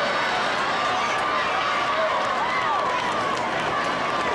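Football stadium crowd: many voices shouting and cheering at once at a steady level.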